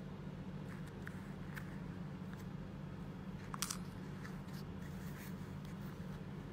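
Faint clicks and scrapes of hands handling small earrings and their jewellery box, over a steady low hum, with one sharper click about three and a half seconds in.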